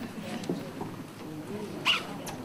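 Faint murmur of voices in a large hall, with a brief high squeak near the end.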